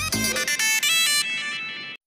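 Bright electronic TV-bumper jingle: a quick run of chiming notes stepping upward, then a ringing final note that fades and cuts off suddenly near the end.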